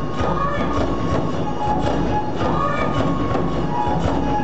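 Tachineputa festival hayashi: Japanese bamboo flutes playing a melody over regular beats of large taiko drums and the clang of hand cymbals, in a large indoor arena.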